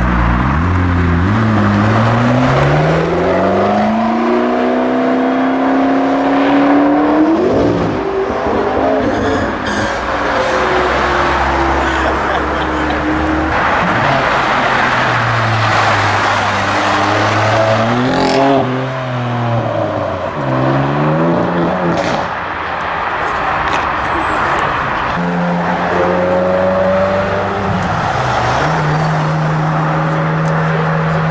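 Several sports car engines accelerating hard away and past one after another, the engine note climbing steeply through the revs in the first few seconds, with gear changes and sharp rev blips later on, over tyre and road noise.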